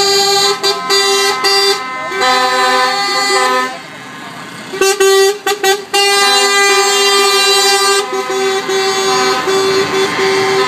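Lorry air horns sounding in long, loud blasts of several tones at once, broken by a short pause about four seconds in and a few quick toots before the long blasts start again.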